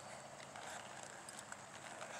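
Faint, soft hoofbeats of a ridden horse stepping off at a walk on arena dirt, a few light steps.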